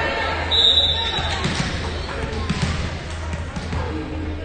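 A referee's whistle blows once for about a second, then a volleyball is bounced a few times on the gym's hardwood floor, over voices.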